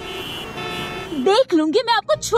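Traffic noise from a busy city road with car horns tooting. About a second in, a woman's voice cuts in, speaking loudly.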